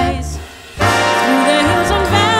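Big band jazz music: the band drops away briefly about half a second in, then comes back in together on a sustained full-ensemble chord.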